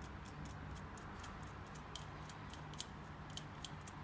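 Faint, fairly even ticking, about five or six small clicks a second, from a screwdriver shaft being twisted down through the handle of a Zimmer Biomet Maxan cervical screw inserter.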